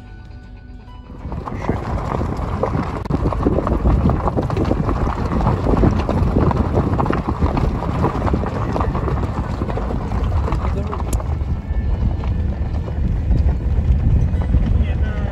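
Background music ends about a second in, and loud, rough wind buffeting the microphone and road rumble from a moving car take over.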